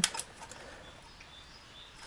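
Quiet background: a faint steady hiss with a few faint, short high chirps, after two short clicks right at the start.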